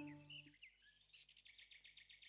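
Faint bird chirps, then a quick trill of about ten short high notes a second in the second half. At the very start the tail of the music fades out.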